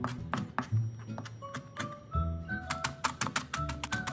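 Background music with a melody and bass line, over fast, irregular knocks of a cleaver mincing preserved mustard greens on a cutting board.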